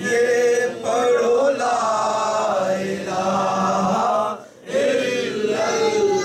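Men singing an unaccompanied devotional naat in a chanting style, with long held notes and a brief pause about four and a half seconds in.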